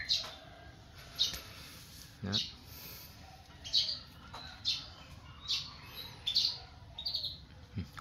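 A small bird chirping repeatedly, short high chirps about once a second.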